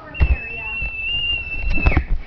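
A single high-pitched squeal held steady for about a second and a half, with bumps and knocks from the camera being handled and moved.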